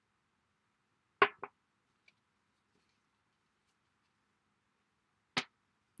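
Light clicks of hard craft tools being handled and set down on a tabletop: a quick double click about a second in and a single click near the end, otherwise near silence.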